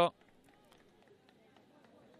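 A male TV commentator's voice cuts off at the very start, followed by faint open-air ambience from a football pitch with a few faint distant taps and calls.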